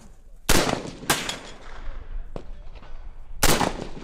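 Short-barrelled semi-automatic Palmetto State Armory pistol-format rifle firing single shots: three loud cracks, about half a second in, a second in and near the end, each trailing off in a range echo. There is a fainter shot in between.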